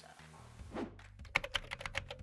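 A quick run of computer-keyboard typing clicks, starting about a second in, over soft background music: a typing sound effect.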